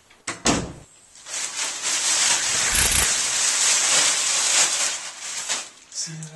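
A wooden door shuts with a thud, then a loud, steady hiss runs for about four seconds before fading out.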